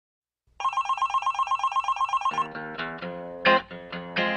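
A telephone ringing with a fast, even electronic trill for about two seconds, then guitar chords strummed in the song's opening.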